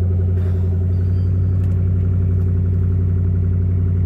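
2010 Ford Mustang's engine idling steadily, heard from inside the cabin as an even low hum.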